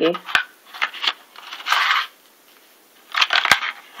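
A plastic packet of adhesive nail bandages being opened and handled: a short crinkling rustle about halfway through, with a few sharp clicks and ticks before and after.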